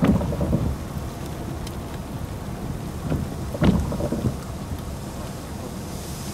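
Thunderstorm sound: a steady low rumble of rain and wind, with two louder low surges, one at the start and one a little past halfway.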